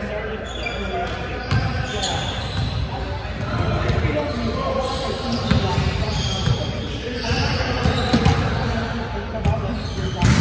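A volleyball bouncing and being struck on a hardwood gym floor, several sharp smacks about a second or two apart, echoing in a large gym with indistinct players' voices.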